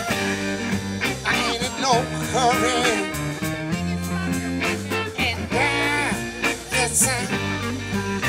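Live rock band playing: drums, bass and electric guitar, with a lead melody that bends and wavers in pitch over steady chords.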